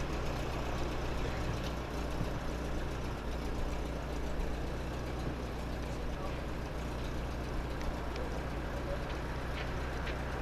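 A motor vehicle's engine idling: a steady, even low hum that does not change.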